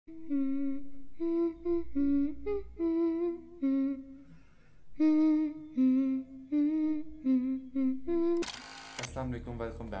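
A wordless melody hummed by a voice, one held note after another, in two phrases with a short break about four to five seconds in. Near the end a brief burst of static-like hiss cuts it off, and a man's voice starts speaking.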